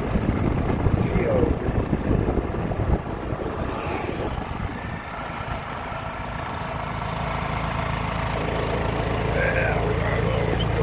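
Golf cart driving along a paved road, its motor running with road noise. The rumble drops about three seconds in, then gradually builds back up.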